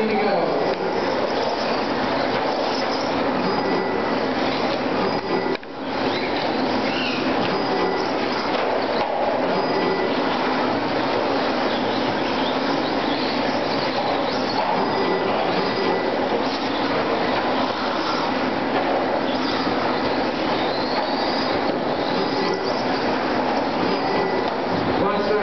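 Electric 2WD RC trucks racing on an indoor dirt track: a dense, steady wash of motor and gear whine and tyre noise. Short whines rise over it as trucks accelerate out of the corners.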